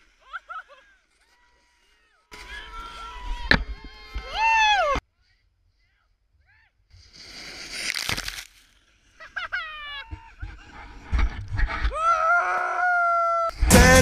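Snowboarders yelling and shouting in short outbursts, with a sharp knock about three and a half seconds in. Around eight seconds there is a brief rush of scraping snow noise as the camera goes into the snow, followed by more yells, and music comes back in near the end.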